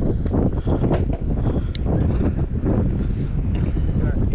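Wind buffeting the microphone: a loud, unsteady low rumble.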